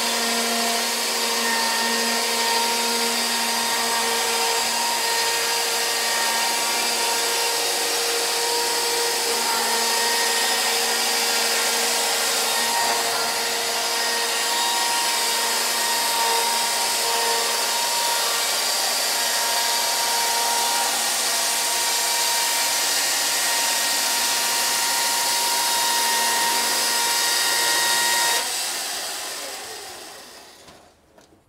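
Electric chainsaw on a Logosol chainsaw mill ripping a two-inch plank lengthwise off a squared log: a steady, even motor whine with the chain cutting wood. About a second and a half before the end it is switched off and winds down.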